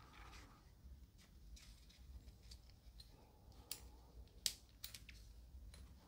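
Faint handling of a lavalier microphone's cable as it is coiled up by hand, with a few small sharp clicks around the middle over a low steady hum.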